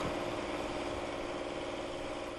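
Fiat fire truck's engine running steadily at an even pitch, driving a pump that draws floodwater out of the street through a hose.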